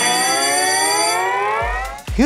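Synthesized rising-tone sound effect closing a TV show's title sequence: one pitched tone sweeps steadily upward in pitch, with a thin high held tone that stops about halfway through. A low bass tone comes in near the end.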